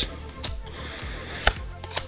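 Trading cards being handled in the hand, one card slid from the front to the back of the stack: a faint tick about half a second in and a sharp snap of card edges about one and a half seconds in.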